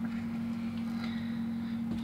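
A steady low-pitched hum with faint hiss beneath it, and faint light handling sounds as a plastic display base is moved on a tabletop.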